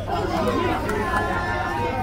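Several voices chattering and calling out over one another, people around a football pitch talking during play.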